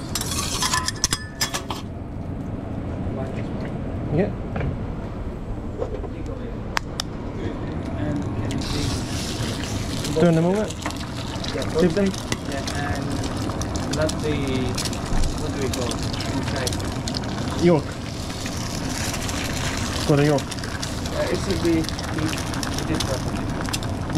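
Eggs frying on a hot flat-top griddle: a steady sizzle that starts about eight seconds in and carries on. At the start, a few sharp clicks and scrapes of a metal spatula on the steel griddle.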